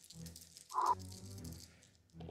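A few small dice shaken in a cupped hand, rattling against each other before a roll. About three quarters of a second in there is a short sound from a voice.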